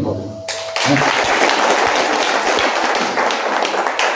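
Audience applauding: many people clapping, starting about half a second in and holding steady.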